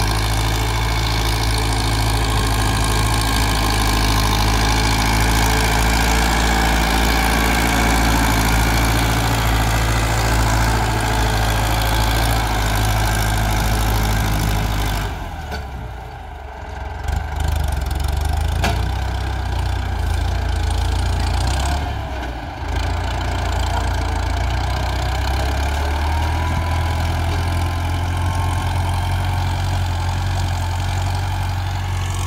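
Ford farm tractor's diesel engine running steadily under load as it pulls a seven-disc plough through the soil. The sound dips briefly about halfway through and again a little later.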